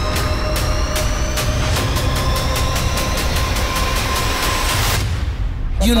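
Electronic background music: a steady beat of sharp hits under a held tone and slowly rising high tones, building up and then breaking off about five seconds in. A song with a singing voice starts right at the end.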